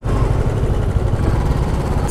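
Royal Enfield Classic 350's single-cylinder engine running steadily, with most of its sound low in pitch.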